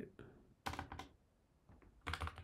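Faint, scattered keystrokes on a computer keyboard: a few mistyped characters are backspaced over in a terminal command.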